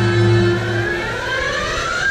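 Soundtrack music of a theme-park night light show, played over loudspeakers. Held low notes drop out about halfway, and a tone sweeps upward in pitch near the end.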